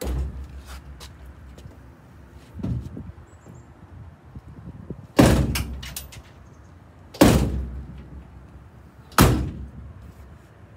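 The steel cab door of a 1948 Ford F1 pickup being shut hard again and again to check its fit after adjustment. There are five heavy thuds, each ringing briefly through the cab; the last three come about two seconds apart and are the loudest.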